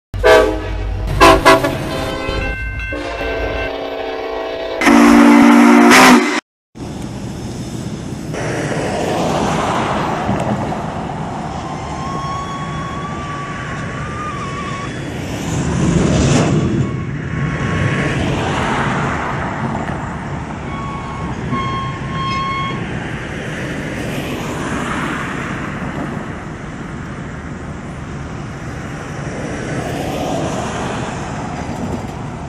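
A short opening of loud pitched tones ending in a loud held blast, then steady outdoor noise of a slow freight train and passing road traffic. One car swells past about halfway through, and a thin squealing tone comes and goes.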